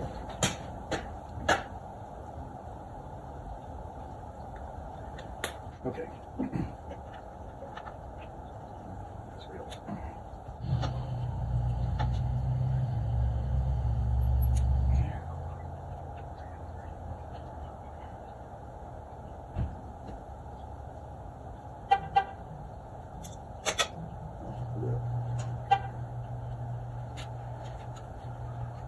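A low, steady vehicle drone swells for about four seconds in the middle and again more faintly near the end. It sits over a constant low hum, with a few sharp metallic clicks from hand tools working on the outboard motor.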